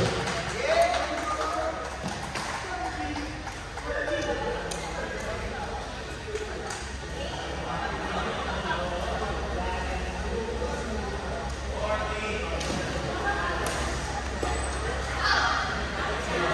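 Indistinct voices and chatter echoing in a large indoor sports hall, with a few sharp clicks scattered through and a steady low hum underneath.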